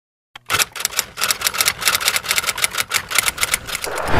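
A fast, even run of typing clicks, like typewriter keys, about eight a second, starting half a second in.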